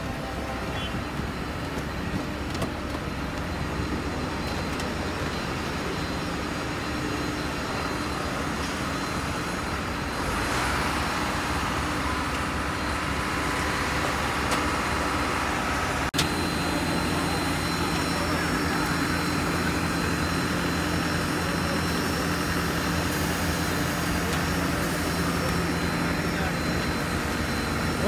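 Steady machine noise on an airport apron from aircraft and ground vehicles, with a thin high whine running through it; it grows a little louder about ten seconds in, and there is one sharp click about sixteen seconds in.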